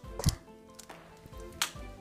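Two sharp clicks about a second and a half apart, from kitchen tongs knocking against a glass baking dish, over quiet background music.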